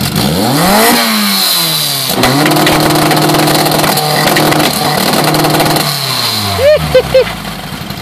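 A 2-litre VW beach buggy engine is revved up and drops back, then held at a steady high speed for about four seconds, as launch control holds the revs, before it falls away. Two short, loud sounds come near the end.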